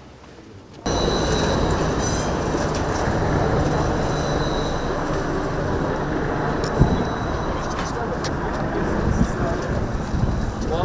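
Tram passing close by on its track: a steady, loud rumble that starts abruptly about a second in, with a thin high whine over the first few seconds.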